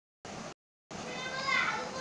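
The sound cuts out to dead silence twice in the first second, then a high-pitched voice rises and wavers, calling out about a second and a half in.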